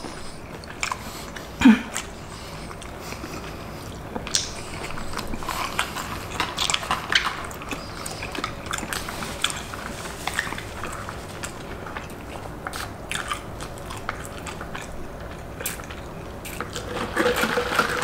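Close-miked chewing and crunching of loaded carne asada fries topped with Hot Cheetos, with scattered small clicks and taps throughout.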